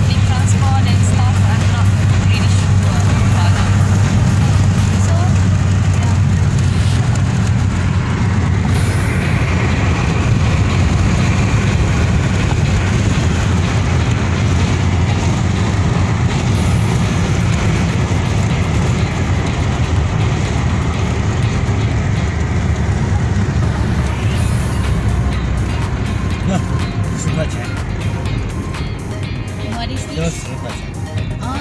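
Inside a moving car's cabin on a highway: a loud, steady low rumble of road and engine noise, easing a little near the end, with music and voices playing over it.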